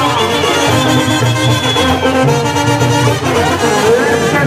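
Brass band music playing: held trumpet and trombone notes over a pulsing low bass line.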